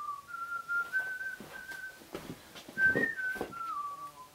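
A person whistling a tune: a single clear tone stepping up and down in pitch through a short melodic phrase. Handling knocks and rustles come with it, the loudest about three seconds in.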